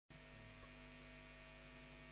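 Near silence: a faint, steady hum with light hiss, the background noise of the recording before the music starts.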